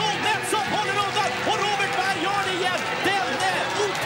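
Race commentary spoken quickly over background music.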